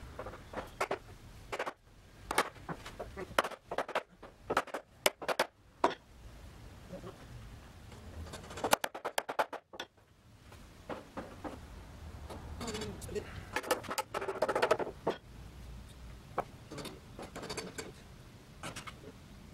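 Wooden ash boards and a breadboard end being handled and fitted together by hand: irregular sharp knocks and clicks of wood on wood, bunched in the first few seconds, then again about halfway and near the end.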